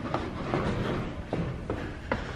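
Footsteps going down stairs: a few soft thuds spaced irregularly over a low rustling of the handheld camera being carried.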